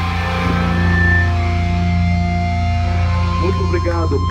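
Live rock band's electric guitar and bass holding sustained, droning notes over a steady low hum, with the drums silent. A voice comes in near the end.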